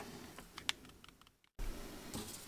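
Light clicks and faint rustle of fingers handling a straight razor's closed scales, with one sharper click about a third of the way in. The sound drops out to silence for a moment about three-quarters through, then the handling noise returns.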